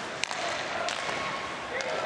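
Ice hockey arena ambience: a steady crowd hubbub with two sharp clacks of stick or puck, about a quarter second in and again just under a second in.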